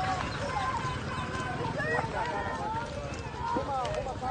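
Several people talking in the background, their voices overlapping and indistinct, over a steady low rumble.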